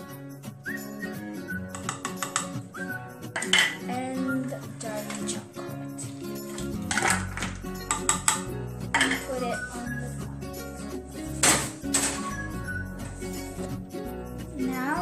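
Background music plays throughout. Over it, a small metal saucepan and utensils clink and clatter several times as pieces of dark chocolate are put into the pan for melting.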